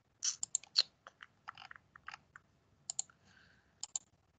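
Computer mouse clicking: a run of quick, irregular clicks, bunched in the first second and again near the end.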